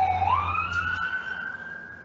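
A wailing siren. Its pitch slides down, turns upward a moment in and then holds high, growing fainter toward the end.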